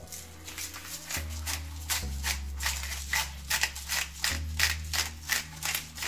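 Hand-twisted disposable salt grinder grinding coarse Himalayan pink salt: a rapid run of dry rasping clicks, several a second, with steady background music beneath.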